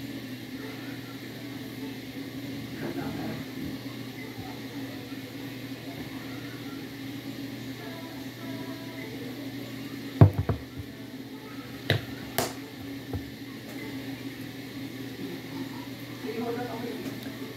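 Steady hum of a running ceiling fan, with three short sharp knocks a little past the middle.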